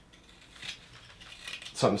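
A few faint clicks and light scraping from a hand carving tool working wood, with a man's voice coming in near the end.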